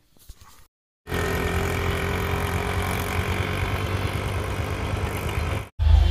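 A vehicle engine running steadily with a low rumble, starting about a second in and cutting off abruptly near the end.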